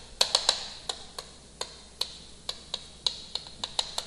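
Chalk clicking and tapping against a chalkboard as characters are written: a series of sharp, irregular clicks, a few a second.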